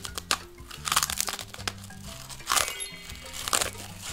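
Crunchy bites and chewing of a crisp round cookie, several short crackling crunches spread through the few seconds, over background music with steady low notes.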